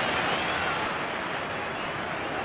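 Football stadium crowd noise, a steady mass of voices that eases down slightly after a goalkeeper's save.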